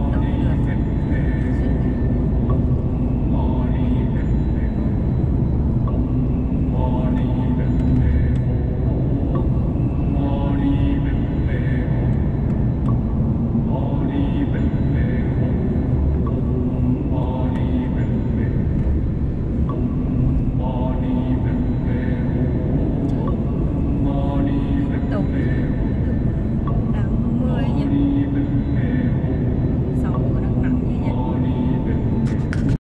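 Steady road and engine rumble heard from inside a car cabin at highway speed, with a person's voice coming in short phrases every few seconds.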